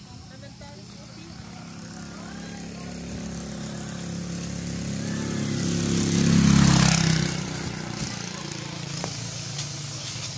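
A motor vehicle's engine running close by, growing steadily louder to a peak about six and a half seconds in and then falling away, as a vehicle drives past.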